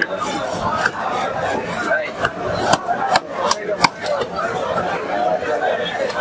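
Fish-market stall: voices of people talking over each other, with four sharp knocks close together near the middle from a blade chopping through fish.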